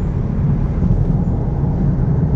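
A steady low rumbling noise with no breaks or changes.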